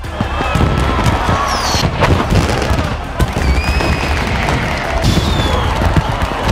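Fireworks going off in a dense run of bangs and crackles over a low rumble, with several whistling shells gliding in pitch. Crowd voices sound underneath.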